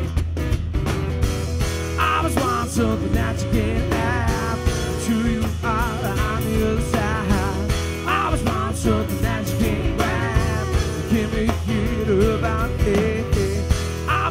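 A live blues band playing an instrumental passage: guitar over drums and bass, with a wavering lead melody line carried over the top.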